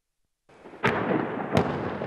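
Blasts and gunfire from fighting in a town at night: a continuous rumbling din that starts half a second in, with two sharp bangs about 0.7 s apart.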